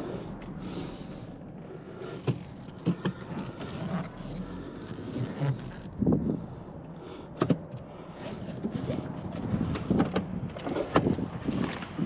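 Inside a Chevrolet crossover's cabin: a steady low engine hum, with scattered short clicks and knocks of the car's controls and fittings being handled.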